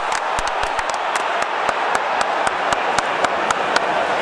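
Stadium crowd noise with hand claps close by that start ragged and settle into a steady beat of about four a second.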